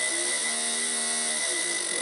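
Injector test bench running: a low-impedance fuel injector, pulsed by a function generator through its driver, gives a steady high buzz with a thin constant whine. Through the middle a man hums a drawn-out 'hmm' that rises and falls in pitch.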